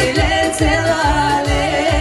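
Live pop-folk concert music played loud over a PA: a woman's sung melody over a band with a thumping bass beat, about three to four beats a second.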